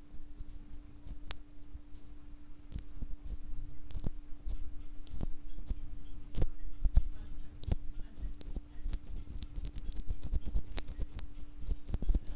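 A NovelKeys Cream linear mechanical keyboard switch (POM stem and housing), lubed with Krytox 205g0 and fitted with Deskeys films, pressed over and over by hand: a run of soft, irregular clicks of the stem bottoming out and springing back. A faint steady hum lies beneath.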